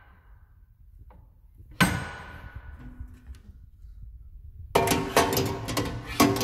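A single metal knock with a ringing tail about two seconds in, then a rattling clatter of metal knocks near the end, from the stainless steel rollers and hopper parts of a dough depositor being handled.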